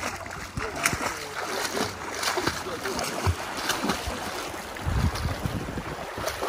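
Water splashing as a person swims in the sea, arms striking the surface with short, irregular splashes.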